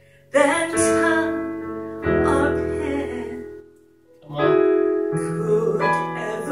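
A woman singing a slow old song with electronic keyboard accompaniment, in sung phrases that start about a third of a second in and again after a short breath just past four seconds.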